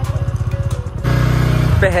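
Small two-wheeler engine idling with a fast, even pulse, then running harder and steadier about a second in as the throttle is opened.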